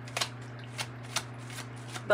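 A tarot deck being shuffled by hand, with a few sharp, irregular snaps of the cards.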